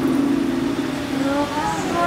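City street traffic: a motor vehicle's engine runs with a steady low drone for a little over a second. Then it gives way to a faint voice over the traffic noise.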